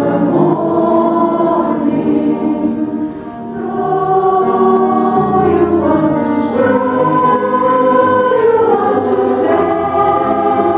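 Women's choir singing in harmony, mostly long held notes that move from chord to chord, with a brief softer passage about three seconds in.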